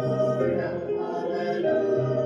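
Mixed church choir of men's and women's voices singing in parts, moving through held chords.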